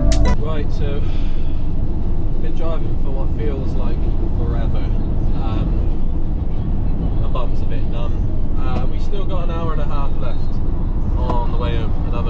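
Steady road and engine noise inside a van's cab at motorway speed, with a man's voice coming and going over it.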